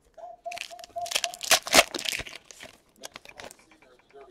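Wrapper of a trading-card pack being torn open and crinkled as the cards are pulled out. There is a run of crackling that is loudest about a second and a half in, then a few light clicks.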